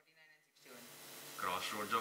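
A man's voice speaking, starting about a second and a half in, over a steady hiss that comes in suddenly about half a second in. Before that there is only faint speech.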